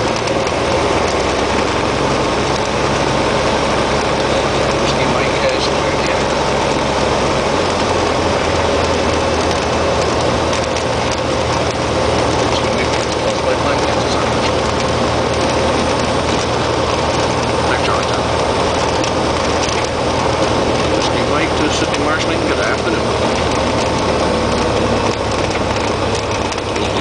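Cessna 172XP Hawk XP's six-cylinder Continental engine and propeller running at low power while the plane taxis after landing, heard as a steady loud drone inside the cockpit. The low engine note shifts slightly about seven seconds in.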